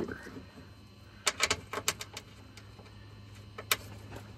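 Small clicks and taps of a metal frunk latch and its 10 mm bolts being set by hand into a plastic mounting frame. A quick cluster of clicks comes about a second in, a few lighter ones follow, and one sharp click comes near the end, over a faint low hum.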